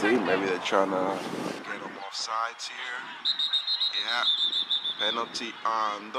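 Several people's voices calling out in the background. About three seconds in, a referee's pea whistle blows one long, high, slightly warbling note lasting nearly two seconds, signalling the end of the play.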